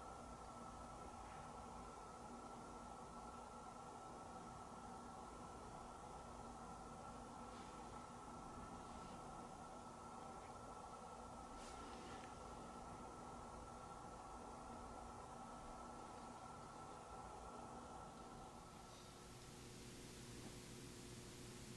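Near silence: faint room tone with a steady low hum and a few faint ticks.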